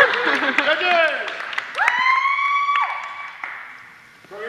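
Excited shouting voices and a flurry of sharp clacks during a longsword exchange, then, about two seconds in, a single long high-pitched call held steady for about a second as the exchange is stopped.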